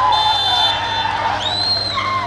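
Referee's whistle blown in short blasts, a brief one early and a longer wavering one near the end, with players shouting over crowd noise on the football pitch; at this point of the match it marks the end of play, the full-time whistle.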